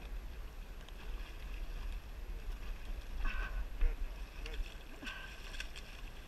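Wind buffeting the microphone in a steady low rumble over the flow of shallow river water, with a few faint clicks near the end.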